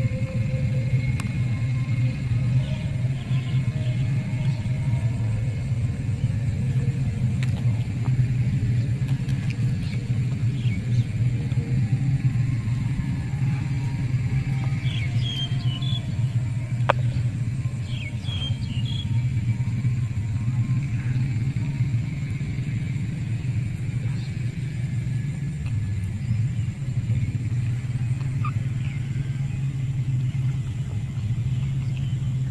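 A steady low rumble, with a few faint clicks and some short high chirps around the middle.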